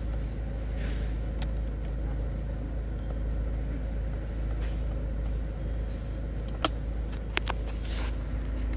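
Ford Focus 2.0L four-cylinder turbodiesel idling, a steady low rumble heard from inside the cabin. A few sharp clicks sound near the end.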